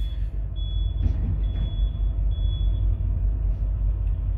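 Low, steady rumble of an idling diesel semi-truck engine heard inside the cab, with a faint thin high whine that comes and goes.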